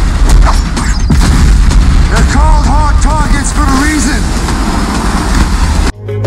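Action-film trailer sound mix: a deep, booming score with sharp hits, and a run of short rising-and-falling vocal cries about halfway through.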